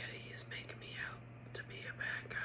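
A woman whispering, with a few short clicks between the words.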